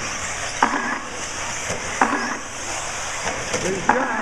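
A steady high-pitched buzz from 1/8-scale RC off-road buggies racing around a dirt track, with short voice-like sounds breaking through about three times.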